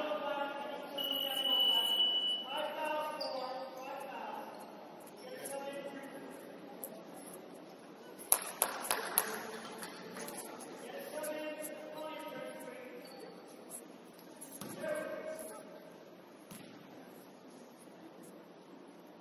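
Indistinct voices calling out across a large, echoing gymnasium during a basketball game. About a second in comes a short steady whistle blast, about a second and a half long, and about halfway through a basketball bounces several times in quick succession on the hardwood floor.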